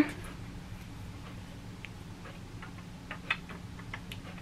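Faint, scattered clicks and ticks of plastic and metal tripod parts being handled and screwed together, over a low steady hum.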